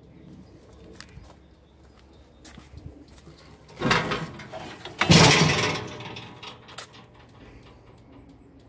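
Engine cover of a Rammax trench roller being unlatched and lifted open: two loud clatters about four and five seconds in, the second and louder one dying away over about a second. The engine is not running.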